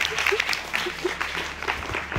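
Studio audience applauding, many hands clapping at once.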